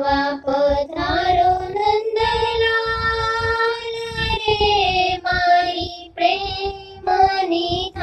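A single high voice singing a Gujarati Krishna thal, a devotional song offering food to Krishna, in long held, gliding notes over a musical accompaniment with a low recurring beat.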